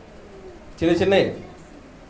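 A man's voice: one short sound with a falling pitch, about a second in, between quiet pauses.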